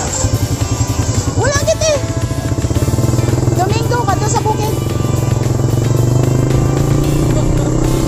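Motorcycle engine running close by, a low, even pulsing that grows louder and steadier about three seconds in, with music playing over it.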